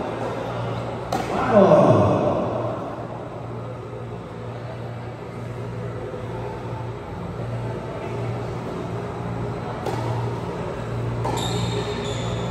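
Tennis ball struck by racquets in a large indoor hall: a sharp pop about a second in and two more near the end, over a steady low hum. A voice calls out just after the first hit.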